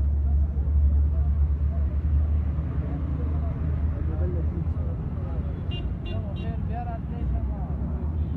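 Busy street ambience: a steady low rumble of road traffic and engines, with men's voices talking in the background.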